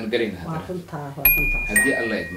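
A doorbell ringing a two-note ding-dong, a higher note then a lower one, about a second in, over a man talking.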